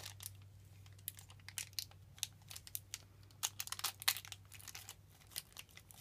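Small clear plastic toy packet crinkling and crackling in the fingers as it is picked at and pulled open, in many small irregular crackles.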